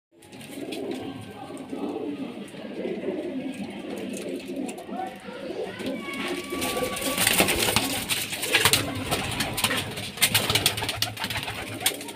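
Several domestic pigeons cooing in a small enclosed loft, a continuous low murmur of calls. From about halfway through, a run of sharp clicks and rustles joins the cooing.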